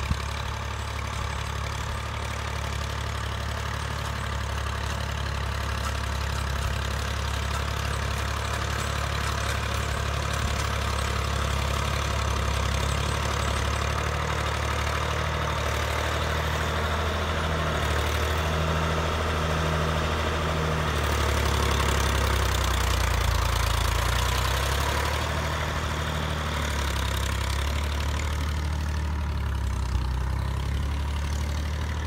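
Diesel engines of a Standen Cyclone sugar beet harvester and a Massey Ferguson tractor hauling a trailer beside it, running steadily under work. The drone grows louder about two-thirds of the way through as the tractor comes close.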